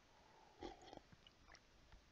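Near silence in a pause between spoken sentences, with one faint short sound a little over half a second in.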